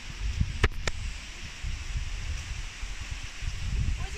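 Wind buffeting the microphone of a handheld camera while walking, an uneven low rumble over a steady rustling hiss, with two sharp clicks close together just under a second in.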